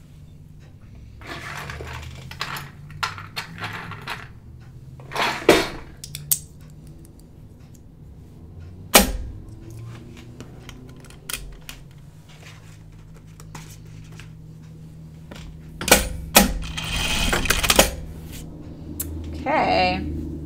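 Scattered clicks and clatter from fitting a bobbin into a Juki industrial sewing machine, with a few sharper knocks about 5, 9 and 16 seconds in. Soft rustling of the boiled-wool fabric being handled comes in patches, and a low steady hum runs underneath.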